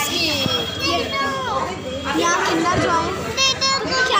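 Children's high-pitched voices talking and calling out, with other voices around them.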